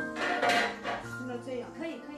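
A metal utensil clinking and scraping on the pan of an electric griddle as small cakes are turned, loudest about half a second in, over background music.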